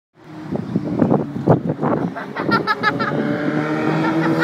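A person laughing in a short run of bursts about two and a half seconds in, over a steady low hum like an engine running and choppy outdoor noise with irregular knocks in the first two seconds.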